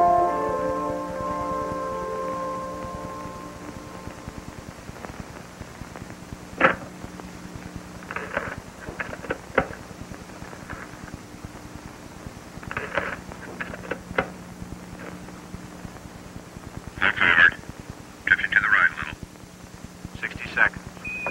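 A soft music cue with mallet-like tones fades out over the first few seconds, leaving a steady low hum. Short bursts of thin, garbled radio voice chatter come and go over it, louder and closer together near the end.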